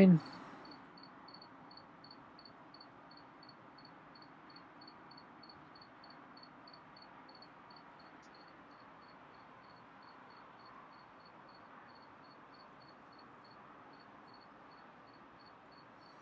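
A cricket chirping steadily, about three evenly spaced chirps a second, over a faint background hiss.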